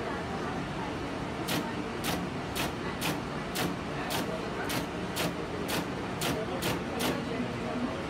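Electromechanical punched-card keypunch punching holes as a name is keyed in: about a dozen sharp clacks, roughly two a second, starting about a second and a half in, over a steady background hum.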